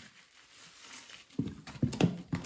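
A rubber-gloved hand squelching through a tub of thick, foamy Comet-and-detergent paste: after a fairly quiet start, a quick run of wet slaps and squishes begins about one and a half seconds in.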